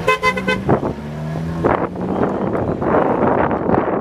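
A vintage sports car sounds a short horn toot right at the start while its engine runs at low revs close by. Over the last two seconds the engine noise grows louder as the car pulls away.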